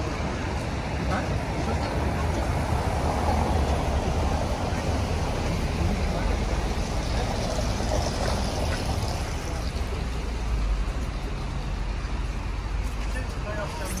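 Outdoor city ambience: a steady low rumble and hiss, with indistinct voices in the background.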